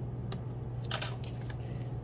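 A light click and then a short patter of clicks and rustle about a second in: a pencil set down on the wooden tabletop and the sheet of construction paper picked up. A steady low hum lies under it.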